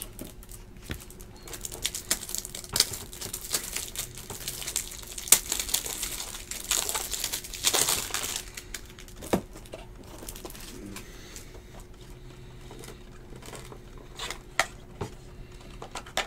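Trading cards and their plastic packaging being handled: crinkling and rustling with many small clicks and taps, busiest in the first half, then lighter handling.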